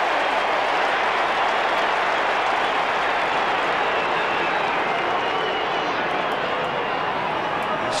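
Large football stadium crowd cheering and shouting at a steady level, many voices merged into one continuous wash of noise.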